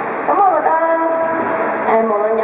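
A woman's voice through a PA microphone, drawing out long, level-pitched syllables.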